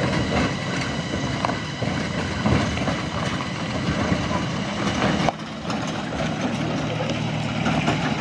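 Pickup truck engine running as the truck drives slowly along a gravel road.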